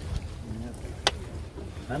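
Wind buffeting the microphone outdoors, a steady low rumble, with a single sharp click about a second in.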